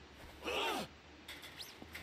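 A single short voiced call of under half a second, rising then falling in pitch, followed by a faint short rising squeak.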